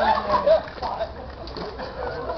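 Several children's and adults' voices calling out and squealing at play, loudest in the first half second and quieter after that.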